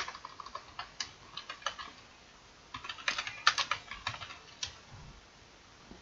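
Computer keyboard being typed on in short runs of key clicks, with a pause between the runs; the clicks thin out and stop well before the end.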